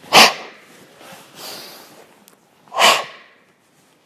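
Two sharp, forceful exhalations about two and a half seconds apart, with a quieter breath between them: Goju Ryu karate breathing timed to the movements of a chishi exercise.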